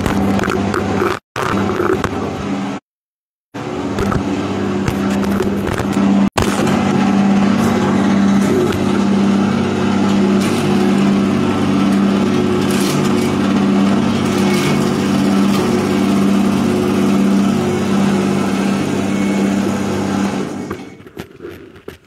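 Homemade electric peanut-shelling machine running with a steady motor hum while peanuts are fed into its sheet-metal hopper. The sound breaks off briefly twice early on and falls away near the end.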